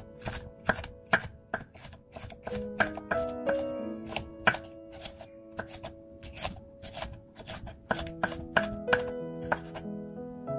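Chef's knife slicing an orange bell pepper into strips on a wooden cutting board, the blade knocking on the board in a quick, irregular series of sharp taps, about two to three a second.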